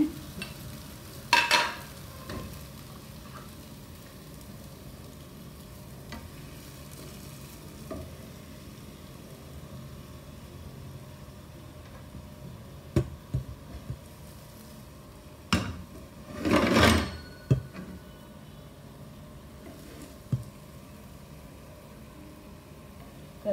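A silicone spatula scooping cooked baingan bharta out of a non-stick pan and onto a ceramic plate: a few sharp scrapes and knocks, the loudest a longer scrape about three-quarters of the way through, over a faint steady hiss.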